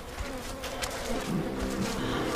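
A low buzzing hum that comes in about halfway through and holds steady, over a soft noisy background with a few faint clicks.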